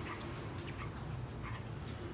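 Caged female Chinese hwamei giving a few short, squeaky calls, about three in two seconds, each bending downward in pitch. Light clicks come in between, over a low steady background hum.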